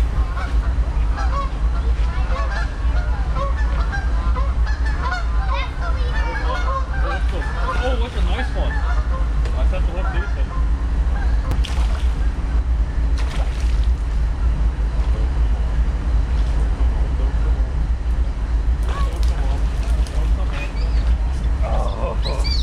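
A flock of geese honking, many calls overlapping, busiest in the first half and thinning out later, over a steady low rumble.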